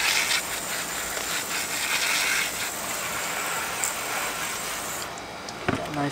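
A short hiss of water misted from a pump sprayer onto the car's paint at the start, then a foam sanding block with 1500-grit paper rubbing over the wet paint to level orange peel, with another hissing stretch about two seconds in and a light knock near the end.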